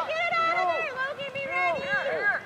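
Raised voices shouting and calling out, overlapping, with one drawn-out high call near the start.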